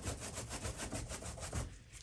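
A paintbrush's bristles scrubbed rapidly back and forth against a surface, about ten rough rasping strokes a second, stopping shortly before the end.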